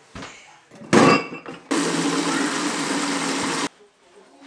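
Kitchen tap running water into a plastic bucket in a steel sink: a steady rush for about two seconds that stops suddenly near the end. Just before it, about a second in, a brief loud clatter of the bucket against the sink.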